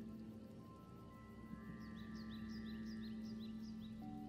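Soft ambient new-age background music: a steady low drone with long held notes, higher notes entering partway through, and a quick run of short high chirps in the middle.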